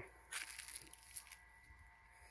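Castor plant leaves and stems rustling and brushing against the phone as it is pushed through the foliage: a crackly rustle lasting about a second, fading out after it.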